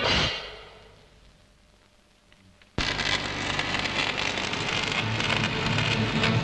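Background music ends and dies away to near silence. Then, about three seconds in, electric arc welding starts suddenly: a dense, steady crackle and sizzle from the welding arc.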